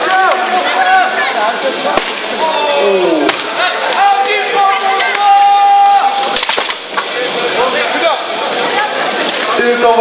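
Armoured béhourd fighters' weapons striking armour and shields in a few sharp impacts, amid shouting voices, including one long drawn-out call midway.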